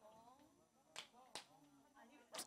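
Near silence: faint voices in the room and two faint, sharp hand claps, one about a second in and a second just after.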